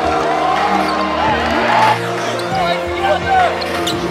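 Background music over live basketball game sound: many short sneaker squeaks on a hardwood court, with a couple of thumps.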